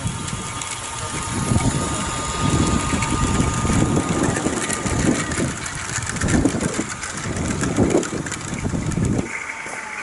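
A garden-railway locomotive hauling a long train of small wooden wagons past, with an uneven rumble and clicking of the wheels on the track and a faint steady whine. The rumble stops suddenly about nine seconds in.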